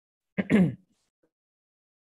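A person clearing their throat once, briefly, picked up by a video-call microphone.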